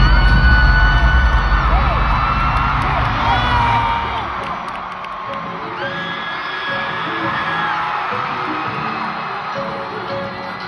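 Arena concert crowd screaming and whooping, with long, high, held shrieks from fans, over a deep bass drone that fades out about four seconds in. Later a quiet, repeated musical note begins.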